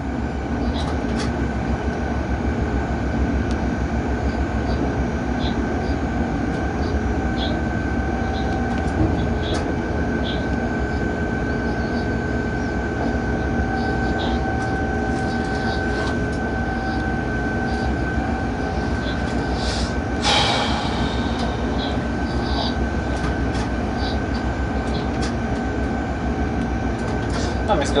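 Cab of an electric freight locomotive under way: a steady running rumble with a constant high whine and scattered light clicks. A brief rushing burst comes about twenty seconds in.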